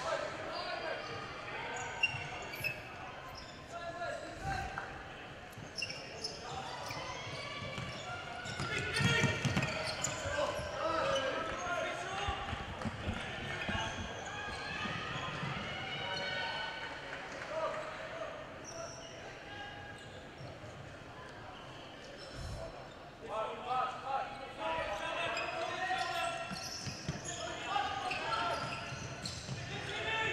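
Futsal game sounds in a large echoing sports hall: players calling and shouting to each other, with occasional thuds of the ball being kicked and bouncing on the wooden court.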